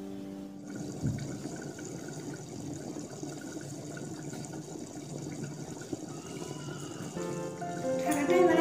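Moong dal chicken curry boiling in a covered pan, a steady bubbling and spluttering with a single short knock about a second in. Background music stops about half a second in and comes back near the end.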